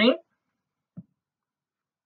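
A lecturer's voice finishing a spoken word, then near silence with one faint, short, low sound about a second in.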